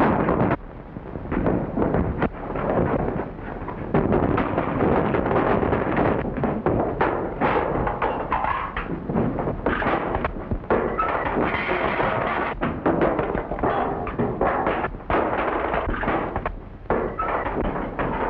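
Film-score music with many sharp thuds and crashes over it, typical of a staged brawl. Old, narrow-band recording.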